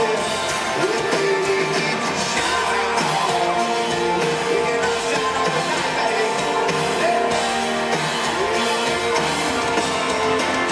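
Live country band playing: a male lead singer sings into a microphone over amplified guitar and drums, heard as a steady, full mix.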